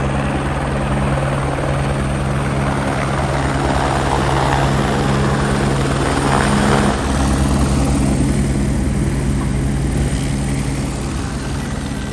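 Helicopter running with its rotor turning: a steady, fast beat of the blades over the drone of the engine, easing off slightly near the end.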